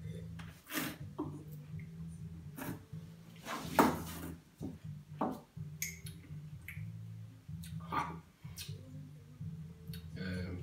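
A man sipping wine from a glass and slurping it in the mouth while tasting, a handful of short slurps and smacks, the loudest about four seconds in.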